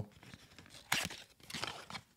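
Cardboard perfume box being handled: one sharp scrape about a second in, followed by lighter rustling and small clicks.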